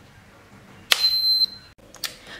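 A SUGON T26D soldering station's rocker power switch clicks on about a second in, followed at once by a single high beep of about half a second as the station powers up.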